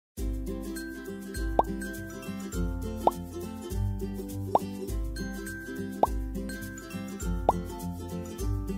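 Light children's background music with a steady beat, over which a cartoon 'plop' sound effect, a quick upward-gliding pop, sounds five times about every second and a half, one for each play-doh log popping into the picture.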